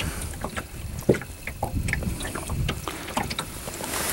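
Low, steady rumble of wind and water around a small boat, with scattered light clicks and taps; one of the louder taps comes about a second in.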